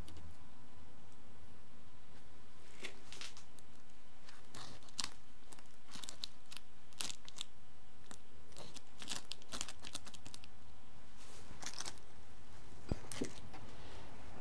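Gloved hands working compost soil blocks and small plastic plant pots: scattered short crunches and rustles of compost with light clicks of plastic.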